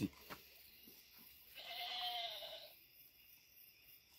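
A single faint animal call, about a second long, with a slightly arching pitch.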